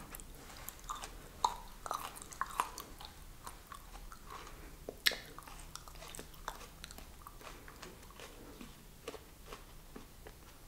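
Close-miked chewing of aloe vera: irregular wet clicks and crunches. The sharpest come about a second and a half in and again around five seconds.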